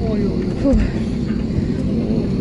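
Steady low rumble inside a parked airliner's cabin, with passengers' voices in the background.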